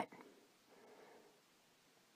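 Near silence: room tone in a pause between words.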